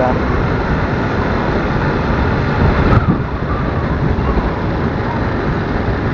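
Steady rumbling road noise of a motorcycle riding through city traffic, picked up by the rider's camera, with a short knock about halfway through.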